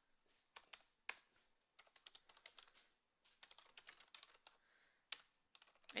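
Faint computer keyboard typing: several quick runs of keystrokes, with short pauses between them.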